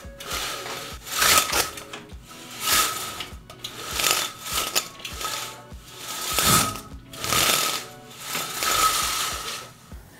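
Window blinds being pulled down by hand, a noisy mechanical stroke with each pull, about one every second and a half, repeated some seven times. Background music plays under it.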